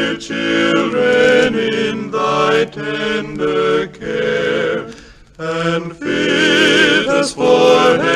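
Male vocal quartet singing a Christmas carol in four-part harmony from an early-1950s record: held chords with vibrato. There is a brief break around five seconds in, then the voices come back.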